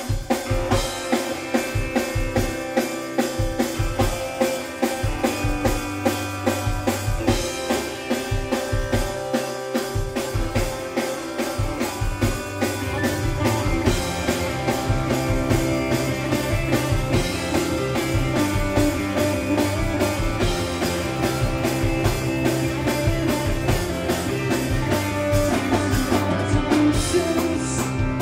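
Rock band playing live: electric guitars, bass and a drum kit keeping a steady beat.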